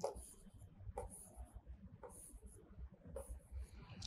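Marker pen writing on a board: a string of short, faint, scratchy strokes as letters and arrows are drawn.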